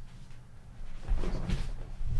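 A low thud followed by rustling, as of something being handled or bumped at the desk, starting about a second in.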